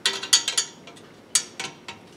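Hand tools working the bolts under a swivel stool's metal seat plate: a few short bursts of sharp metallic clicks and clinks.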